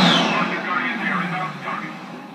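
Military jet aircraft passing low and fast, their engines loudest at the start and then fading, the pitch falling as they go by. Heard through a TV speaker.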